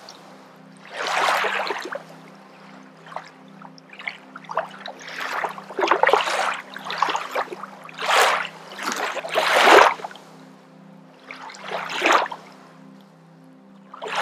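Forceful yogic breathing through the nose: rushing breaths every one to two seconds, a few coming in quick clusters. Soft background music with a low steady drone plays underneath.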